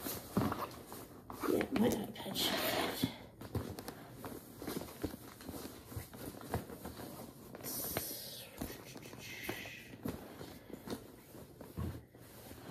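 Handling noises of a tote bag being packed: irregular rustling with light knocks and clicks, and two longer stretches of rustle about two seconds in and near eight seconds in.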